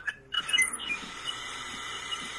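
Background noise on a call line: a few brief squeaks about half a second in, then a steady hiss with a faint held tone.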